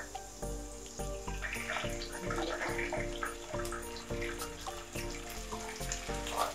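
Canned tuna and its liquid tipped into a hot pan of sautéed garlic and onion, the liquid hissing and spluttering in the oil as a spatula spreads it, over steady background music.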